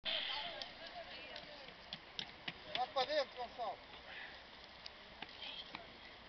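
Quiet open-air ambience at a football pitch, with scattered sharp clicks and taps through the whole stretch. A nearby man speaks a couple of words in Portuguese about three seconds in.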